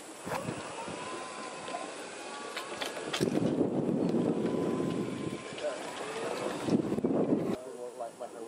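Golf cart driving: a steady running rumble with wind on the microphone, growing louder about three seconds in and cutting off abruptly just before the end.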